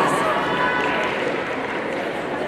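Indistinct chatter of a crowd of spectators, many voices blending into a steady hubbub.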